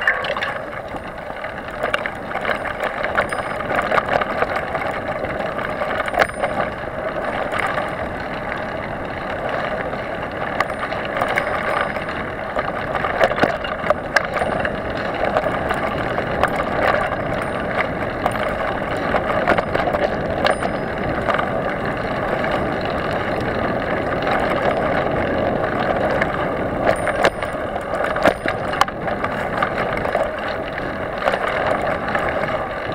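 Mountain bike ridden fast along a dirt forest trail: a continuous rush of tyre and wind noise with frequent small clicks and rattles from the bike.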